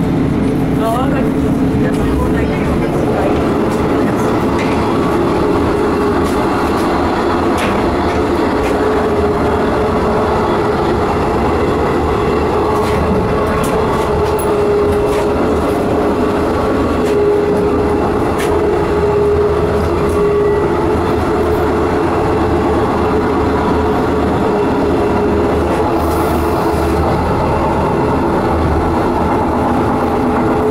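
Inside a moving Czech Railways class 814.2 RegioNova two-car diesel railcar: the steady running noise of its diesel engine and wheels on the rails, with a constant hum tone and occasional light clicks.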